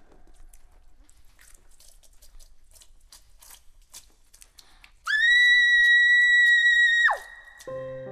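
Horror sound effects of blood splurting: about five seconds of faint wet crackles and clicks. Then a loud, high, steady tone sweeps up into place, holds about two seconds and drops sharply in pitch. Held synth-like musical notes begin near the end.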